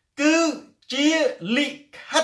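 Only speech: a man talking in short, animated phrases.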